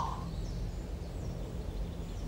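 Faint outdoor ambience: a steady low hum with a few faint, high bird chirps.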